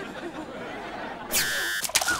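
A short, loud electronic buzz, a sitcom sound effect, about a second and a half in and lasting about half a second.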